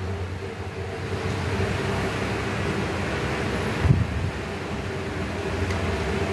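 Steady mechanical hum with a low drone and a faint higher steady tone, with one soft knock about four seconds in.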